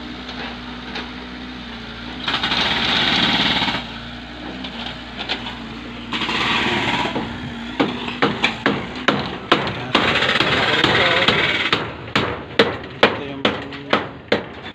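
A mini excavator's engine running steadily, growing louder for a second or two at a time as it works. From about eight seconds in, a rapid, irregular run of sharp knocks, like hammering, several a second.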